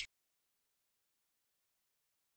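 Near silence: digital silence, after the clipped end of a spoken word at the very start.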